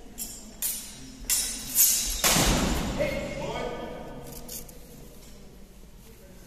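Steel training swords clashing: four sharp metallic clacks in under two seconds, then a loud burst of noise about two seconds in, followed by a drawn-out voice calling out.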